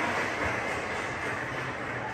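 Steady hiss of a large hall's room noise through the PA, fading slowly, with a faint low hum underneath.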